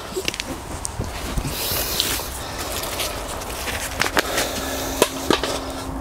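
Hands scraping and scooping loose soil and handling plastic plant pots and a crate: steady scuffing and rustling with a few light clicks and knocks.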